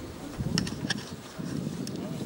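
Wind buffeting the camera microphone, giving an uneven low buzzing rumble, with three sharp clicks spread through it.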